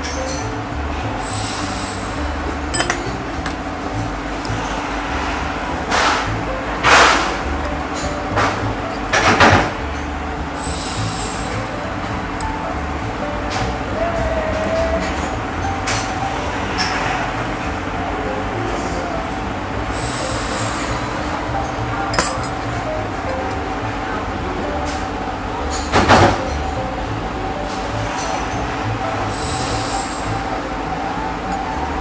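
An Allen key working the socket-head cap screws of a steel press die: several sharp metal clinks and knocks as the key is set in, turned and lifted out, over a steady background hum.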